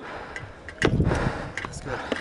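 A few sharp knocks from wooden practice weapons and shields, the loudest about a second in with a dull thud under it.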